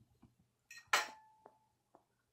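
A single light clink of tableware about a second in, with a short ring after it, against quiet room sound and a few faint ticks.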